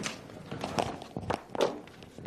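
Irregular knocks and taps of things being handled close to a microphone, about five in two seconds, with a faint room murmur underneath.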